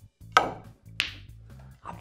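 Snooker shot: the cue tip striking the cue ball with a sharp click about a third of a second in, then a second, higher click with a brief ring about two-thirds of a second later as the ball hits another ball or the cushion.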